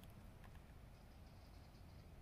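Near silence, with only a faint, steady low rumble.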